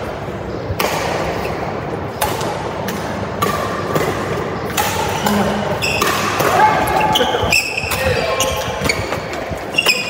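Badminton doubles rally: rackets striking the shuttlecock about every second and a half, with short squeaks of shoes on the court, echoing in a large hall.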